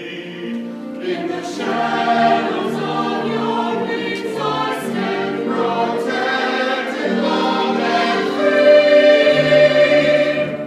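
Church choir of mixed voices singing a hymn together, holding long notes, and growing louder near the end.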